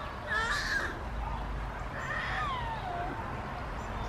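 A crow cawing: two short harsh caws about two seconds apart.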